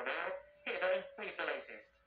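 Speech from a television speaker, thin and cut off in the highs, in short phrases with a brief pause about halfway through.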